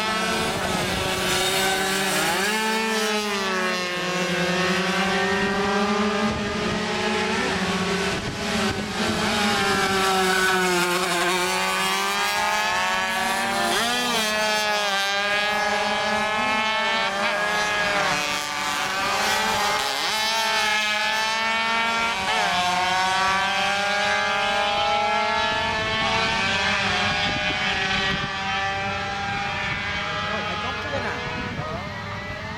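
Several small classic racing motorcycle engines revving hard as the bikes pass and pull away, each engine note climbing in pitch and dropping back at every gear change, over and over, with a steady lower drone underneath.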